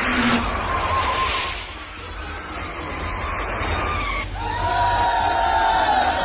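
Film car-chase soundtrack: a car's engine and a skid through dirt over a low rumble, with background music. A held tone comes in about four seconds in.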